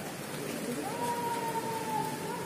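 Steady rain hiss on an open parade ground, with one long drawn-out call held on a single note from a little before halfway, dipping slightly at its end.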